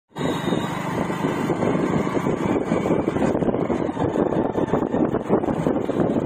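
Motorcycle running at riding speed, its engine pulsing steadily under a rush of wind and road noise on the microphone.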